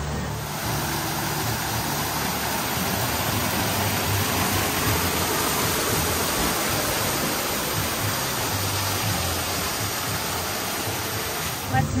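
Steady rushing and splashing of an artificial pool waterfall, heard from right under the falling water.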